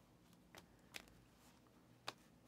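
Near silence, with two faint clicks about half a second and a second in from trading cards being handled on a tabletop mat.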